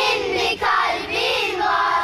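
High voices singing a drawn-out, wavering phrase, with a short break about half a second in.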